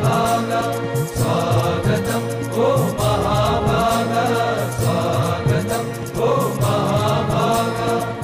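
Background music: a mantra chanted by voices over a steady held drone, the sung phrases repeating every second or two.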